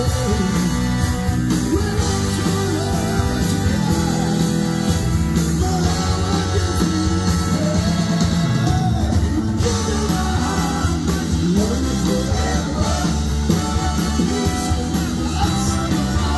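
Live rock band playing with a male lead singer: drums, bass and electric guitar under the vocal, loud and steady throughout.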